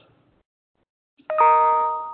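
A single chime struck about a second in: several bell-like tones ring out together and fade away over about a second, with near silence before it.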